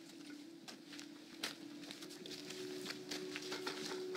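Footsteps and small scuffs and knocks of several people moving on a dirt-and-stone yard, scattered and irregular, over a faint steady hum.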